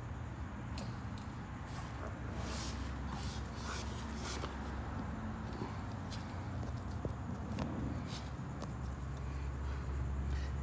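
Steady low hum with scattered light clicks and rustles of handling.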